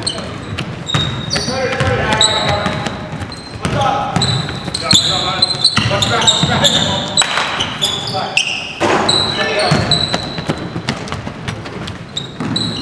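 Basketball game on a hardwood gym floor: the ball bouncing, many short high sneaker squeaks, and players' voices calling out.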